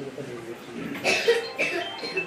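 A person coughing twice, about a second in, with voices talking around.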